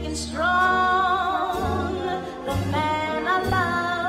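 Free dance program music: a sung melody of long held notes with vibrato over a low bass, with new notes starting at about one and a half seconds and again at about two and a half seconds.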